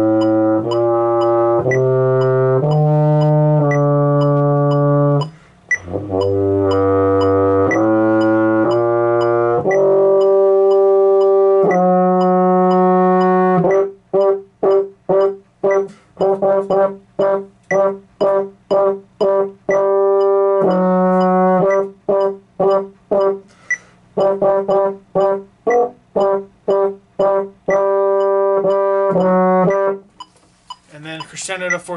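Baritone horn playing a band part at 120 beats a minute: long held whole and half notes for about the first ten seconds, then rhythmic passages of short, separated notes, about two a second, mostly on G.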